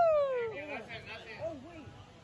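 A man's drawn-out "woo" cheer, sliding down in pitch and fading out about half a second in, followed by faint chatter of voices.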